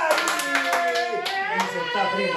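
Men cheering in celebration: one long, held shout over fast hand-clapping.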